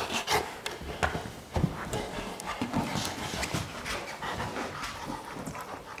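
A Rottweiler panting. Scattered knocks and thumps come in between as it moves about with a plastic Jolly Ball.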